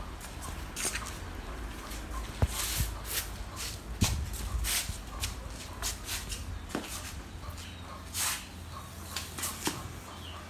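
Handling noises: scattered rustling and shuffling with a few sharp knocks, the hardest about four seconds in, as a heavy gnarled tree trunk is moved about and set down on a tile floor.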